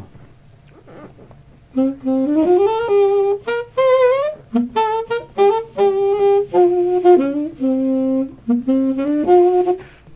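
Saxophone played inside a Best Brass enclosed practice mute case: a melodic phrase of separate notes, some held and some short, starting about two seconds in.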